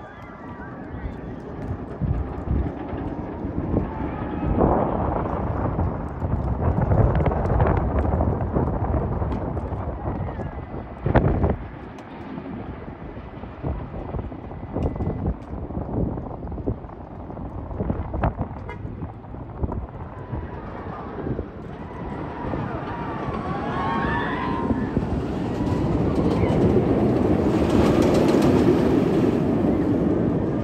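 Roller coaster trains running on an RMC hybrid coaster's steel track, a continuous rumble with scattered sharp knocks, the strongest about eleven seconds in. Riders scream and shout on and off, and near the end a train passes close and the rumble grows louder.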